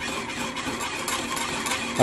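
Wire whisk steadily stirring a thick mixture of melted white chocolate and cream in a small metal saucepan, its wires scraping against the pan.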